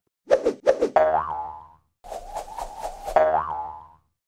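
Two springy, boing-like cartoon sound effects, each ringing out and fading; the first is led in by a few quick clicks.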